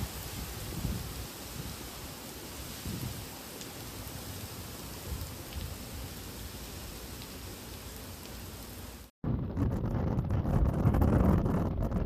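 Heavy hurricane rain driven by gusting wind: a steady hiss of rain with rising and falling gusts underneath. About nine seconds in it cuts off abruptly and gives way to louder wind buffeting the microphone.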